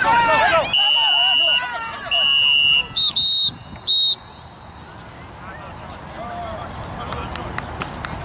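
A loud, steady, high-pitched electronic tone sounds in two long blasts, then three short beeps at a higher pitch. A voice shouts just before it.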